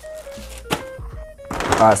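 A plastic shopping bag being handled and rustled, with one sharp thunk about three-quarters of a second in, over quiet background music.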